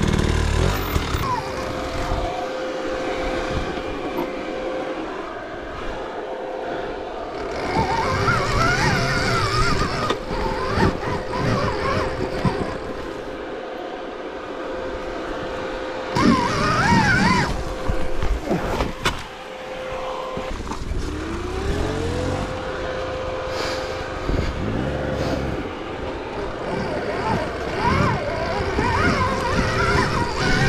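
Dirt bike ridden over a forest trail, its motor giving a steady high whine that rises in pitch once about three quarters of the way in, over the rumble and knocks of the bike crossing rough ground.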